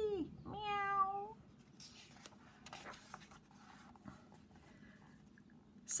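A single high meow ending about a second and a half in, followed by faint paper rustling as a picture-book page is turned.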